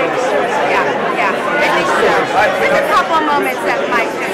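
Speech only: people talking close to the microphone over the chatter of a crowd.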